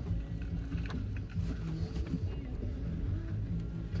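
Vehicle engine idling with a steady low hum, heard from inside the cab, with a few faint clicks.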